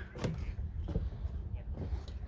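Faint voices over a steady low rumble, with one sharp click about a quarter second in.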